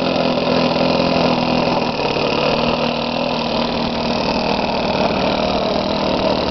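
Fuel-burning engine of a radio-controlled model Corsair idling steadily as the plane taxis on the ground.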